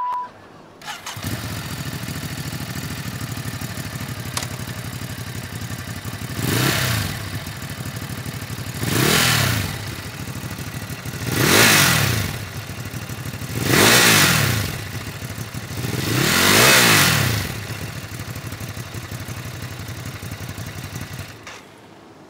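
Ducati Hypermotard 950's L-twin engine, fitted with Termignoni titanium aftermarket silencers, idling from about a second in. The throttle is blipped five times, about every two and a half seconds, and each rev rises and falls over roughly a second.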